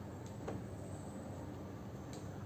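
Faint handling of a UPS power cord and its plug: two light clicks about half a second in, over a steady low room hum.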